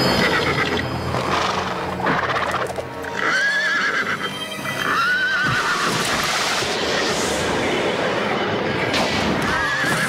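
A horse whinnying three times, about three seconds in, about five seconds in and near the end, over background music.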